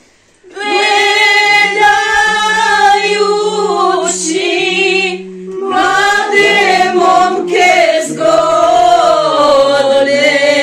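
Women singing a slow song unaccompanied, with long drawn-out notes. The singing resumes about half a second in after a short break and pauses briefly near the middle.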